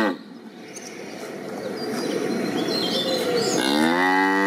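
Cow mooing: one moo cuts off at the start, then a rough noise grows steadily louder with a few faint bird chirps over it, and the next moo begins near the end.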